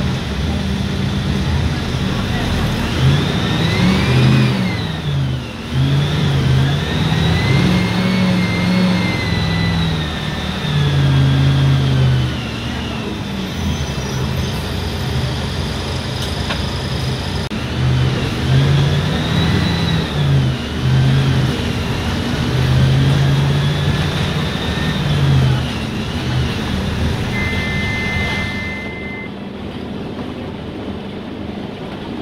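Mercedes-Benz OF-1519 city bus's front-mounted four-cylinder turbodiesel heard from inside the cabin, pulling away and easing off several times, its pitch rising and falling with a high whine following the engine. A steady electronic beep of about two seconds sounds near the end.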